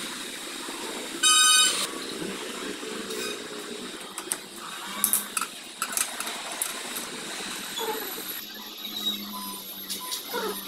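Scattered light metallic clicks and clinks of hand tools and parts on a Royal Enfield Bullet's crankcase as it is being stripped. A short, loud beep sounds about a second in and lasts about half a second.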